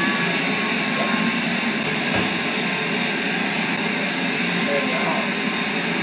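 Steady running noise of coin-operated laundry machines: a loud, even rush with a faint hum through it.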